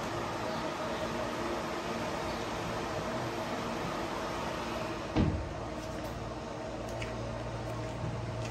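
Steady hum of an electric pet drying cage's fans, with one loud thump about five seconds in as the cage is shut.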